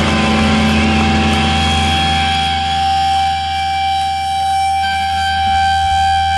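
Electric guitar amplifier feedback: one steady high tone held over a low sustained bass drone, with no drums playing.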